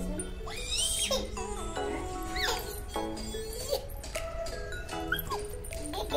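Background music with steady held notes, and several short high-pitched squeals or whimpers over it.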